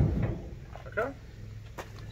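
A single heavy thump of the steel pickup truck bed being shifted on its wheeled cart, dying away within about half a second.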